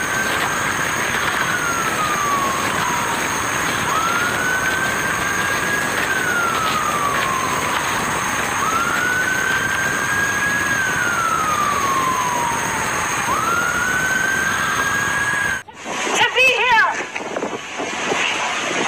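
Emergency vehicle siren in a slow wail, over a steady hiss. Each cycle rises quickly, holds high, then slides slowly down, repeating about every four and a half seconds. It cuts off abruptly near the end and a loud voice takes over.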